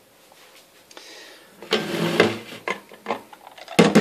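Kitchen handling sounds as a lid is fitted onto a glass jar of fruit water and containers are shifted on the counter: a short scrape about two seconds in, then a few light knocks.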